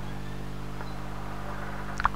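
A steady low hum with a stack of evenly spaced overtones.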